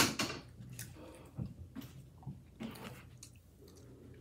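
A person chewing food close to the microphone, with wet mouth clicks and smacks scattered through, after a short loud rush of noise right at the start.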